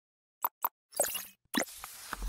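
Sound effects for an animated logo intro: two quick pops just after the start, then two louder rushing swells, one about a second in that fades quickly and another about a second and a half in that carries on.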